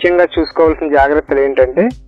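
Speech only: a man talking steadily in Telugu.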